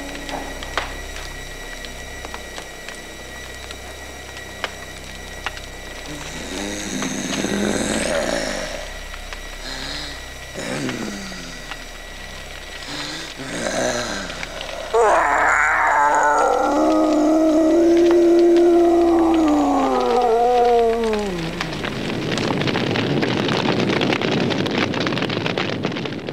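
Horror-film soundtrack over a low steady hum: scattered eerie cries, then a loud, drawn-out howling cry of about six seconds that falls in pitch at the end. It gives way to an even rushing noise of fire.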